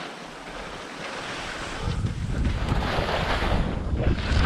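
Skis hissing and scraping over uneven spring snow during a descent, with wind buffeting the microphone; the sound grows louder about halfway through.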